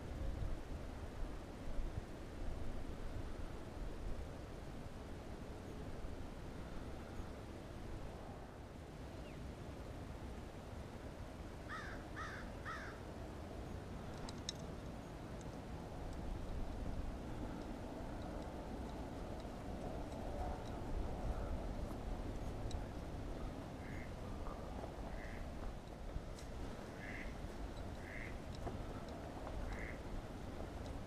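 Waterside birds calling: three short calls in quick succession about twelve seconds in, then a scattering of single calls near the end, over a low steady rumble.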